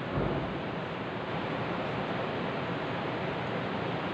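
Steady hiss of background noise in a pause between spoken passages, with a brief low bump just after the start.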